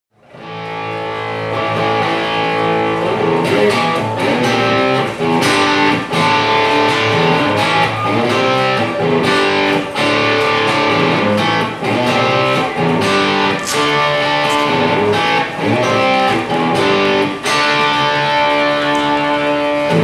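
Electric guitar playing the instrumental intro of a rock song live, with bent notes. It starts out of silence and builds over the first two seconds.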